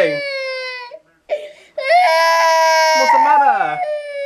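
A toddler crying hard: a long wail falling in pitch, a brief catch of breath, then a second, higher wail held for over a second before it sinks away near the end.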